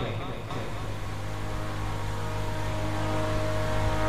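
Harmonium holding a steady chord as a drone, growing slowly louder.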